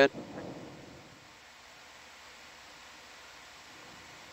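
The end of a spoken word, then a steady faint hiss of background noise with no other events.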